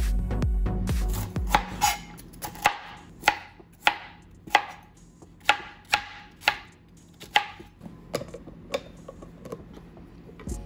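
Chef's knife chopping cauliflower on a plastic cutting board: a steady series of sharp knocks, about one to two a second, that grows fainter after about eight seconds. It begins as the intro music ends, about a second and a half in.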